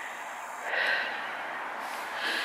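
A person breathing out close to the microphone: a breathy exhale, about a second long, starting just under a second in, over a faint steady hiss.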